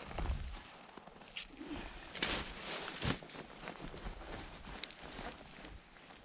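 Scattered rustling and light clicks of hands and clothing handling a freshly caught fish on the ice, with a louder rustle about two seconds in and a sharp click about a second after.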